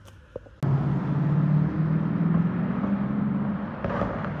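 A car's engine running as it drives along the street toward the camera, with road noise. The hum starts abruptly about half a second in, and its low pitch creeps slightly upward.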